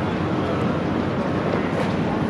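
Steady city street ambience: a continuous low rumble of background noise.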